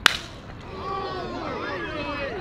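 A baseball bat strikes a pitched ball: one sharp crack right at the start, the loudest sound here. About half a second later voices start calling out on the field.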